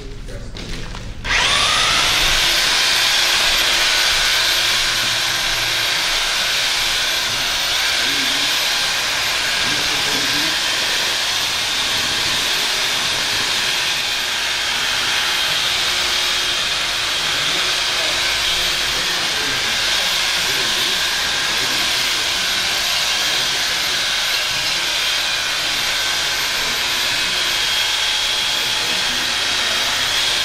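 Corded electric drill with a mixing paddle spinning up with a short rising whine about a second in, then running steadily under load as it churns thick two-part traffic coating in a metal pail.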